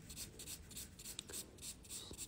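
Faint, quick back-and-forth strokes of a 100/180-grit buffer file on a fingernail, about four or five a second. It is sanding off the nail's natural shine to leave a porous surface before treatment.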